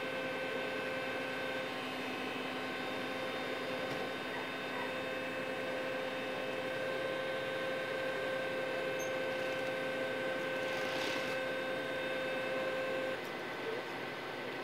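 A steady machine hum with two steady whining tones over a constant noise, the lower tone cutting off about a second before the end; a short hiss about eleven seconds in.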